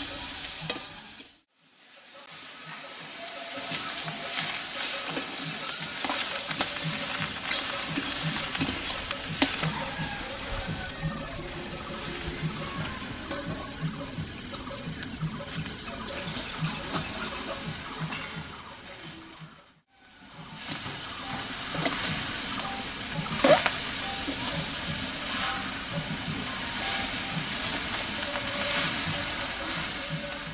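Vegetables sizzling as they fry in a metal pan, with a long metal spatula scraping and clinking against the pan as they are stirred. Green peas and potato fry first, then drumstick flowers. The sound breaks off briefly twice, about a second and a half in and again near the twenty-second mark.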